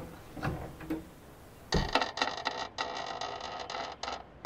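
Knocks and clicks as a hinged picture frame is handled and swung open off a wall, then, from about halfway, roughly two seconds of rapid mechanical clicking and rattling.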